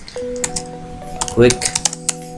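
Computer keyboard keys clicking as a word is typed, a run of quick keystrokes that bunch up near the end, over soft background music with long held notes.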